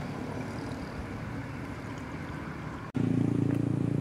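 Road traffic going round a roundabout: a steady hum of passing cars. About three seconds in the sound cuts abruptly to a louder, steady low engine drone.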